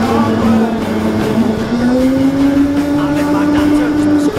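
Go-kart motor running under acceleration, a steady whine that climbs gradually in pitch as the kart gathers speed.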